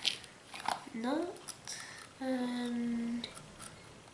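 A person's wordless vocal sounds: a short rising 'ooh' about a second in, then a held hum that falls slightly for about a second. Light clicks of small metal parts being handled come near the start.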